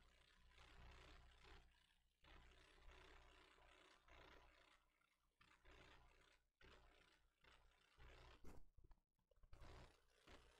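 Near silence: faint room tone with soft, irregular rushes of noise every second or two.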